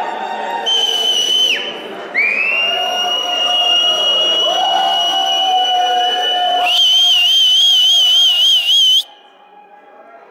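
Dub siren through the sound system: a high steady tone drops away about a second and a half in, a new tone sweeps up and holds for several seconds, then warbles at about four wobbles a second before the sound cuts off suddenly near the end.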